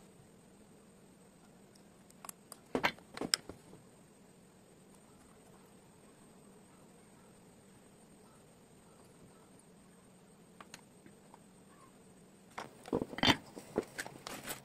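Small clicks and taps of tools and electronic parts being handled on a wooden workbench, in a short cluster about two to three seconds in and a denser rattle near the end, over a faint steady hum.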